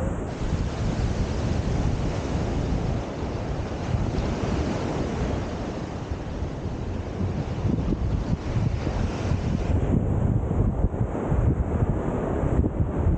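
Wind buffeting the microphone in gusts over the steady wash of surf breaking on a sandy beach.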